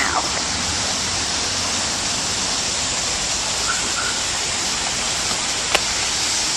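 Steady rushing hiss with no pitch to it, with one sharp click near the end.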